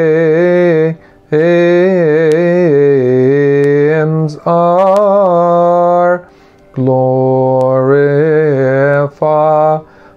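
A man singing a Coptic hymn solo in English, in slow melismatic chant: long held notes with wavering ornamental turns, broken by four short breaths.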